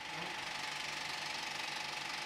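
35mm film projector running, a steady rapid mechanical clatter.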